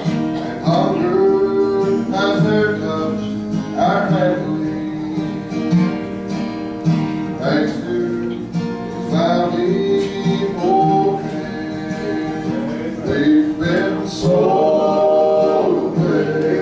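Men's voices singing a gospel song over guitar accompaniment.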